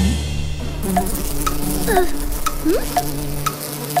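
Cartoon soundtrack: soft held music under short regular blips about twice a second, with quick sliding notes and a light crackling, sizzle-like effect.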